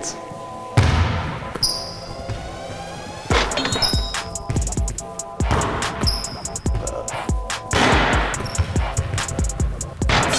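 A basketball bouncing repeatedly on a hardwood gym floor during three-point shooting, with a few short high squeaks, over background music.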